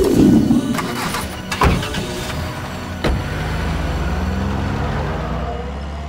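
A few knocks, then a car engine starting with a click about three seconds in and running on steadily, its pitch rising slightly.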